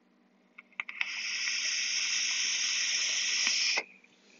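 A hit taken on a box-mod vape: a couple of faint clicks, then a steady airy hiss of nearly three seconds that cuts off sharply.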